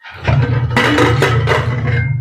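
Aluminium pressure cooker lid being twisted open and lifted off, a loud, rough scraping of metal against the cooker's rim. It lasts about two seconds and stops as the lid comes free.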